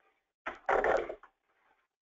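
A short burst of a person's voice, a word or two, about half a second in; the rest is near silence.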